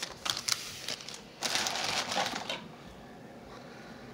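Trading cards being handled on a table: a few light clicks and taps as cards are set down, then a rustle of cards sliding against each other for about a second, starting about one and a half seconds in.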